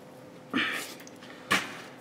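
Brief handling noises: a short scuff about half a second in, then a sharper knock at about a second and a half that fades quickly.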